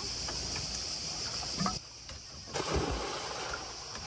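A child jumping off a motorboat into the sea, with a splash a little past halfway, over a steady high hiss.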